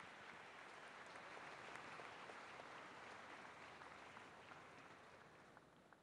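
Faint audience applause, a soft even patter of many hands clapping that slowly fades out toward the end.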